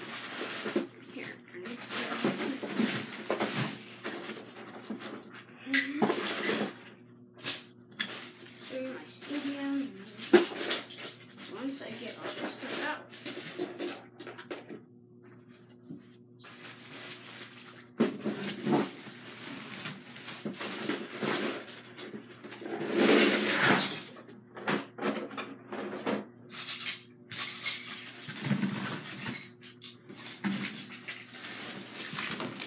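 Indistinct voices with intermittent clattering and knocks, over a faint steady hum.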